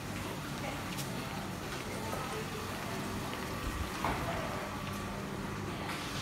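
Steady low room hum, with a few faint ticks and knocks of movement and handling.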